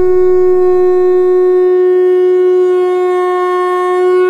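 One long, steady note blown on a wind instrument, held at a single unwavering pitch.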